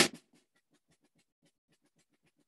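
A last snare drum stroke from a wooden drumstick right at the start, dying away within a fraction of a second, then near silence.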